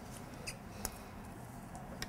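Quiet room tone between performances, with two faint, brief clicks, the second about a third of a second after the first.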